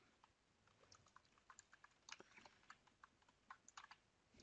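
Faint typing on a computer keyboard: irregular keystrokes.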